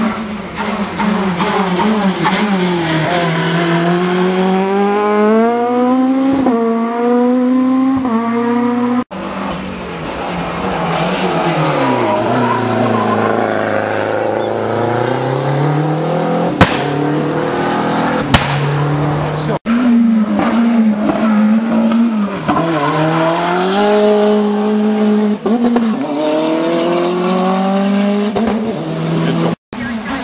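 Rally cars at full throttle on a tarmac stage, one car per shot across three cuts. Each engine climbs in pitch through a quick run of upshifts. In the middle shot the engine drops low for a bend, pulls away again, and there are two sharp cracks.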